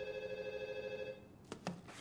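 Telephone ringing with a rapid trilling two-tone ring that stops just over a second in, followed by two light clicks.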